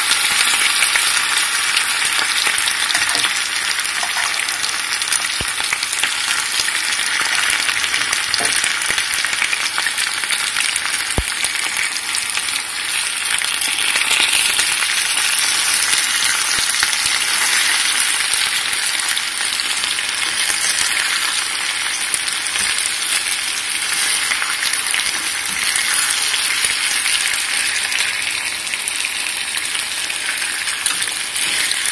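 Pork belly sizzling in a clay pot as it is stirred with chopsticks: a steady frying hiss, with a couple of light taps.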